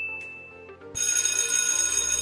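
Quiz countdown sound effect: the last chime of the countdown fades out, then about a second in a continuous bright electronic ringing, like a bell, sounds as the timer reaches zero to signal that time is up, over faint background music.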